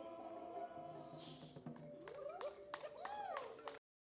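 An a cappella choir's final held chord dying away, followed by a few sharp clicks and voices calling out in rising-and-falling whoops. The sound cuts off abruptly just before the end.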